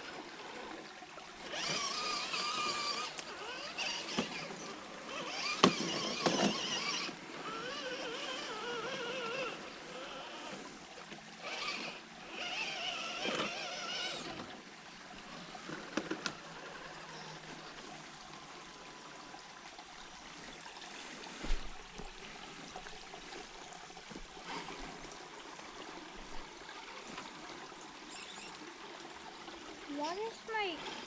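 Electric motor and gear whine of RC rock crawlers in short throttle bursts, wavering up and down in pitch through the first half. Under it runs the steady trickle of a creek, which is all that remains later on.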